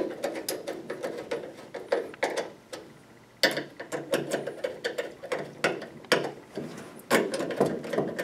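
Screwdriver tightening screws into the metal frame of a gas-pump canopy light fixture: a run of quick, irregular clicks, with a short pause about three seconds in before the clicking resumes.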